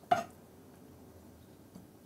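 A knife cutting a sapodilla on a wooden cutting board: one short click just after the start, then quiet handling.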